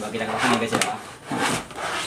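Nested plastic chicken-feeder pans rubbing and scraping against each other and the cardboard box as they are pulled apart and lifted out, with some brief low talk.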